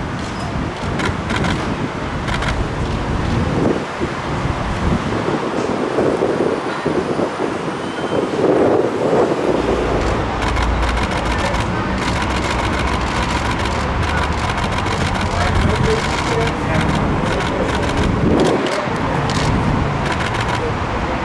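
City street traffic noise with indistinct voices of people talking. From about ten seconds in, a low vehicle rumble comes up, along with a run of rapid sharp clicks.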